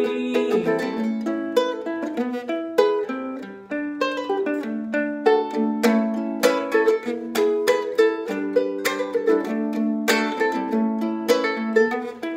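Solo ukulele played without singing: a continuous instrumental passage of plucked notes and chords.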